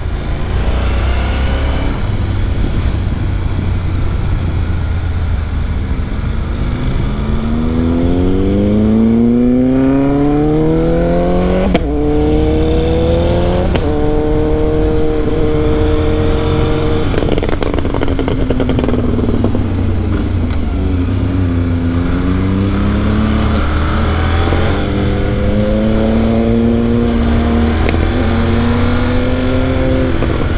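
Honda NC 750's parallel-twin engine pulling up through the revs, with a gear change about twelve seconds in. It then holds steady, eases off, and pulls again near the end, under a heavy rumble of wind on the microphone.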